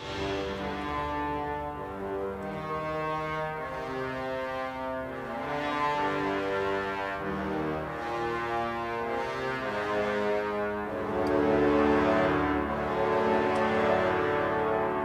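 Sampled orchestral brass playing back from a DAW: tenor trombones and other brass holding sustained chords under a slow heroic melody, swelling louder near the end.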